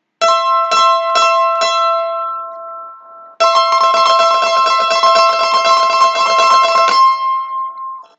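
Mandolin playing a C and E double stop: four single picked strokes that ring out, then a few seconds of fast tremolo picking on the same two notes, which ring on briefly at the end.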